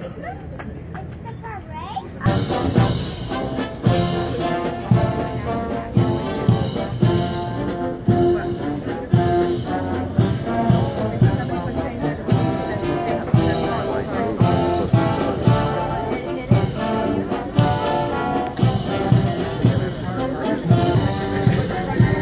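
Brass band playing with a steady drum beat of about two beats a second, starting about two seconds in.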